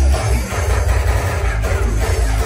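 DJ dance music played loud over a nightclub sound system, heavy with bass.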